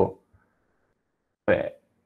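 A man's speech trails off into near silence, broken about one and a half seconds in by a brief vocal sound from him.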